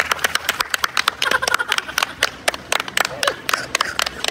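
Several people clapping their hands, the claps quick and uneven, with voices mixed in.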